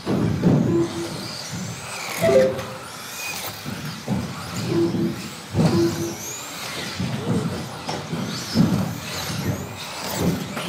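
Electric 2wd stock-class RC buggies racing: their motors whine, rising and falling in pitch as they accelerate and brake. Repeated low rumbles and knocks come from the buggies running and landing on the track.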